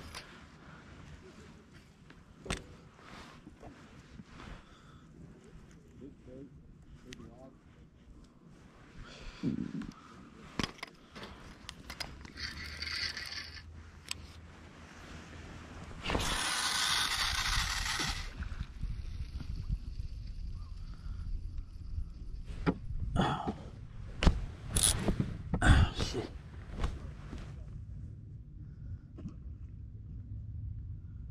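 Handling noise on a body-worn camera: scattered clicks and knocks from the fishing rod and gear. About sixteen seconds in there are about two seconds of loud jacket-sleeve rustling against the microphone, followed by a low rumble.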